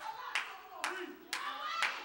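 Four sharp hand claps in a steady beat, about two a second.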